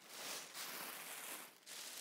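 Tissue paper rustling and crinkling under gloved hands pressing it down, a soft papery hiss that dips briefly about a second and a half in.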